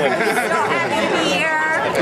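Chatter: several people talking at once.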